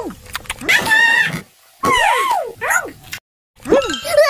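Cartoon children's voices making wordless, high-pitched 'mmm' and 'ooh' sounds, several short ones whose pitch rises and falls, with a brief moment of total silence about three seconds in.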